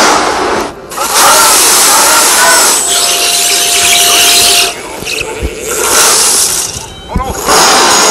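A loud jumble of many video soundtracks playing at once: voices, music and sound effects piled on top of each other, with no single sound standing out. The mass drops briefly and changes a little under a second in, near five seconds and about seven seconds in.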